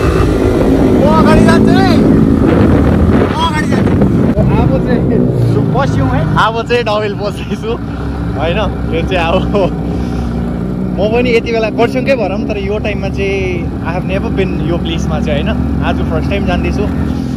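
Motorcycle engine running steadily as the bike rides along a road.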